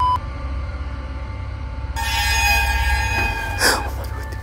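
Glitchy logo-sting sound effects over a low steady hum. About halfway through, a cluster of thin, high screeching tones starts suddenly and runs on, ending in a short swish just before the end.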